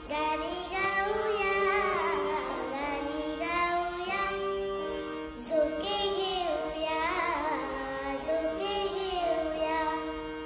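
A young girl singing solo, her phrases gliding up and down in pitch with few breaks.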